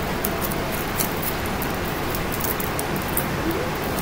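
A steady background hiss with faint, light ticks and rustles from a thin silver craft wire being straightened between the fingers.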